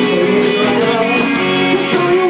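Live rock band playing loudly: electric bass, electric guitars and drums, with a man singing into the microphone.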